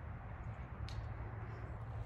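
Quiet, steady low rumble of outdoor background noise, with one faint click about a second in.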